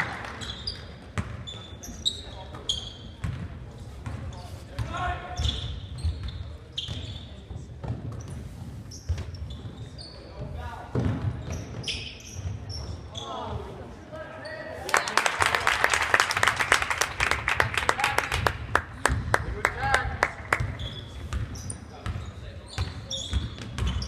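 Basketball game in a reverberant gym: the ball bouncing on the hardwood floor, sneakers squeaking and players calling out. About fifteen seconds in, the crowd breaks into several seconds of clapping and cheering, the loudest sound here.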